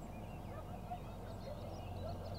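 Birds calling in the wild: many short chirps and whistled notes overlapping, with some lower calls mixed in, over a steady low hum.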